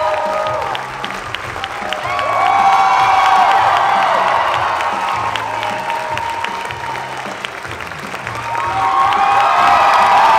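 Upbeat curtain-call music with a steady bass line, while a theatre audience claps and cheers. The applause and cheering swell about two seconds in and again near the end as more of the cast comes forward to bow.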